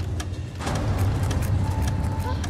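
Carousel slide projector clicking as it advances slide after slide on its own, about four clicks a second, over a low rumbling drone.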